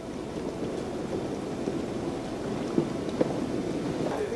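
Broken river ice floes moving downstream after the ice sheet has given way, grinding and cracking against one another in a dense crackling rush, with two sharper cracks near the end.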